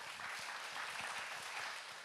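Congregation applauding at a moderate, steady level, many hands clapping together.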